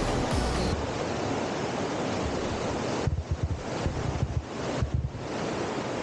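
Muddy, rain-swollen stream rushing over a rocky drop in a steady roar of water. Gusts of wind buffet the microphone with low rumbles for a couple of seconds around the middle.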